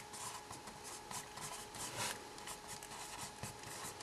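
Felt-tip marker writing on a whiteboard: faint, quick short strokes of the tip on the board.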